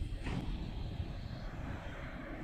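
Low, steady outdoor rumble of a factory log yard, with a brief sharper noise about a third of a second in.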